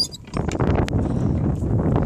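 Irregular rustling and knocking from a handheld phone's microphone being jostled, with a sharp click about a second in.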